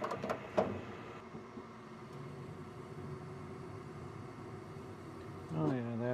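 Concord CG80 gas furnace running with its burner lit: a steady mechanical hum.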